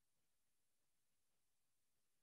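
Near silence: faint steady hiss of an open microphone, nothing else.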